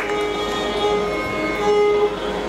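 Steady Carnatic sruti drone held on one pitch with its overtones, faint higher notes sounding over it and a single stroke at the very start.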